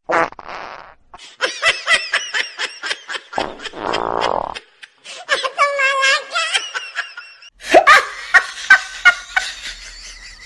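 Dubbed-in comedy sound effects: bursts of laughter alternating with fart noises.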